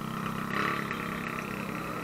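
Motorcycle engines idling steadily in the background.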